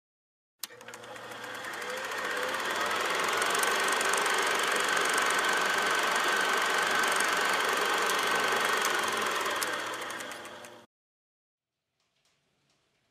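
Logo-intro sound effect: a dense noisy texture full of rapid fine clicks with a steady high whine. It swells in over a few seconds and cuts off abruptly near the end.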